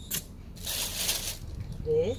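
A short click, then about half a second of rustling, from a seedling in a small plastic nursery pot being picked up and handled.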